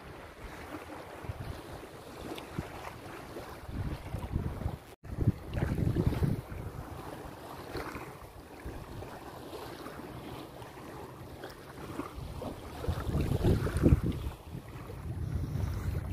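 Wind buffeting the microphone over small waves lapping in shallow water at the shoreline. The wind rumble swells in gusts around five to seven seconds in and again near the end, with a brief drop-out just before the first gust.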